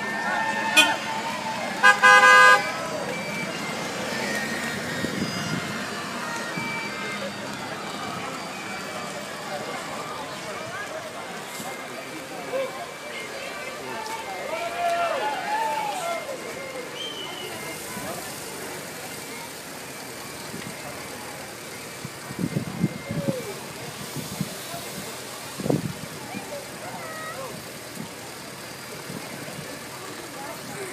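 A vehicle horn gives a short, loud blast about two seconds in, over a crowd of people talking in the street.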